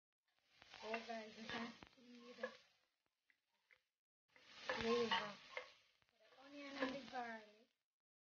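Oil sizzling with chopped aromatics in a stainless-steel pot while a spatula stirs it, in three bouts broken by silence.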